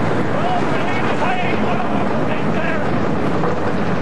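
Steady rush of wind over the microphone while riding aboard the Steel Dragon 2000 steel roller coaster as it runs at speed over its hills. A faint voice is heard underneath.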